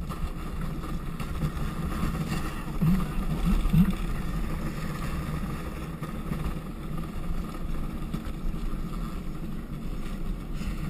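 Luge cart's wheels rolling down a concrete track, a steady low rumble with wind on the microphone. It briefly gets louder about three to four seconds in.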